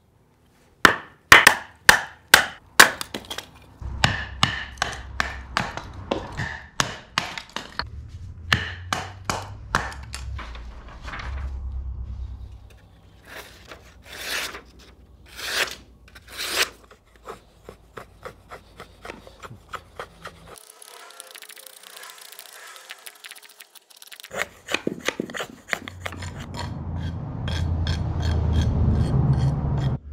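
A fixed-blade skinner knife being batoned through a small log round: a wooden baton knocks on the knife's spine in quick runs of sharp strikes as the wood splits. Near the end, a steadier rasping as the blade shaves wood.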